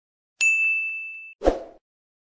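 Intro-animation sound effects: a single bright bell-like ding that rings out and fades over about a second, then a short dull pop about a second and a half in.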